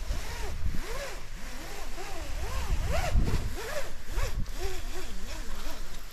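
Wet caving rope running through the bars of a rappel rack during a descent: a steady rasp with short squeaks that rise and fall in pitch, a few each second. The rack bars are heating up enough to steam.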